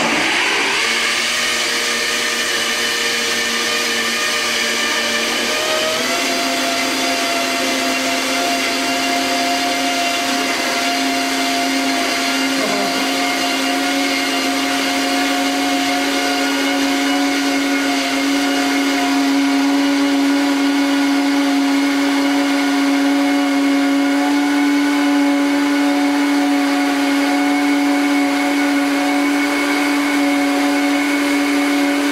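High-speed countertop blender running on its automatic blend cycle, processing a liquid sauce. The motor whine holds steady, steps up to a higher speed about six seconds in, and then keeps running at that higher pitch.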